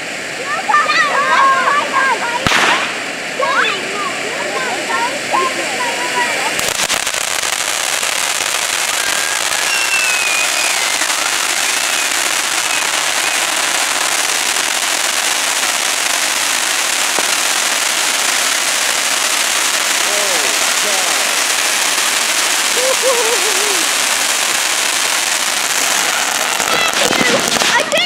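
Crackling Silver Dragon firework fountain spraying sparks with a dense hiss and crackle. It gets much louder about six and a half seconds in, runs steadily, then cuts off just before the end. A single sharp pop comes about two and a half seconds in.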